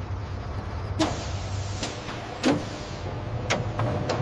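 Industrial machinery: a steady low hum broken by about five sharp mechanical clicks and short hisses, the loudest about a second in and halfway through.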